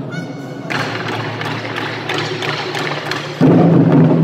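Taiko drum ensemble. A brief high pitched sound opens, then a softer passage of quick sharp stick strokes, and the full group comes back in loud with heavy drumming about three and a half seconds in.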